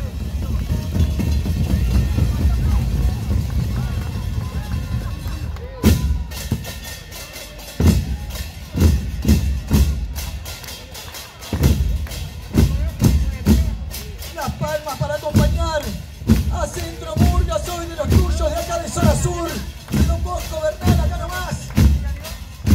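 Murga bass drums (bombos) playing: a continuous low rumble for about the first six seconds, then separate heavy drum strokes with sharp cymbal-like crashes in an uneven rhythm. Voices rise over the drumming in the second half.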